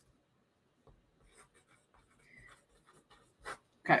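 Handwriting on paper: faint, short scratchy pen strokes with pauses between them.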